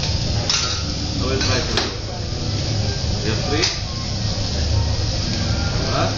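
Busy restaurant background of indistinct voices and a steady low hum, with a few sharp metal knocks and clinks of cooking utensils.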